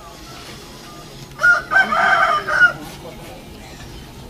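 A rooster crowing once, about a second and a half in, lasting just over a second.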